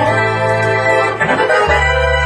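Hammond Elegante XH-273 organ playing sustained chords over a held bass note; about one and a half seconds in, the chord changes and a deeper bass note comes in.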